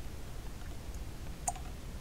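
A single sharp plastic click about a second and a half in: a plastic paint palette being set down on a cutting mat, over a low steady room rumble.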